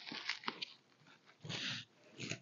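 Clear plastic wrap crinkling and crackling as fingers pick at it and peel it off a wrapped parcel, with a louder rustle about one and a half seconds in.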